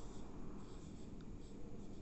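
Samsung Galaxy Note 9 S Pen stylus tip scratching faintly across the glass screen in short, intermittent strokes while handwriting.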